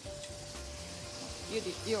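Tuna steak, cherry tomatoes and white wine sizzling in a stainless frying pan as the tomatoes are pressed with a spatula to let out their juice.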